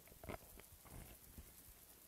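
Near silence, with a few faint, brief sounds of people moving about: soft steps and shuffling, about a third of a second in and again around one second in.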